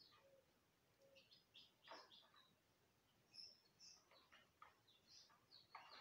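A few faint, short peeps from day-old mini garnisé (bantam) chicks, scattered irregularly.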